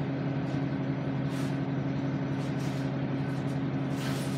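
Bus engine idling, heard from the driver's seat: a steady low hum, with a few brief soft hisses about one and a half and two and a half seconds in.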